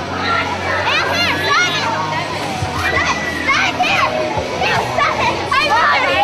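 A group of children talking and squealing excitedly over one another, close by, with high-pitched shrieks rising above the chatter.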